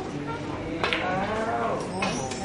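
Snooker cue striking the cue ball, which hits the black at close range: a sharp click a little under a second in and another click near the end. After the first click a long drawn-out voice follows, rising and falling in pitch.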